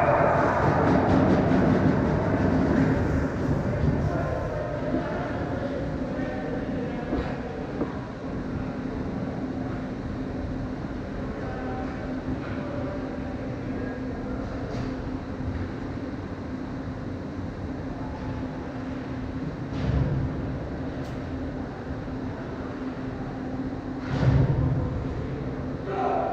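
Ice-rink arena: a burst of cheering and shouting during the first few seconds, after a goal, settling into the rink's steady rumble with a constant low drone. A single dull knock sounds near the end.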